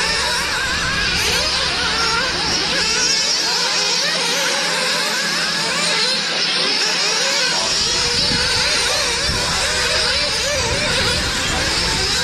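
Several nitro-powered radio-controlled buggies racing, their small glow-plug engines revving up and down in overlapping high-pitched tones as they throttle through the corners.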